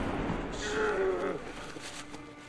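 A low, drawn-out groan from a single voice, starting about half a second in and sliding down in pitch over about a second.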